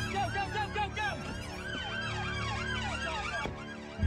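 Police car sirens on a fast yelp, several overlapping, each rising and falling about three times a second over a low steady hum.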